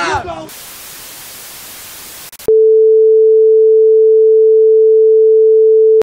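A shout cut off by television static hiss for about two seconds, then a loud, steady broadcast test tone that starts suddenly about two and a half seconds in, sounding with the colour bars.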